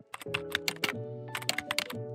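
Computer keyboard typing: a quick, irregular run of key clicks over background music with steady held notes.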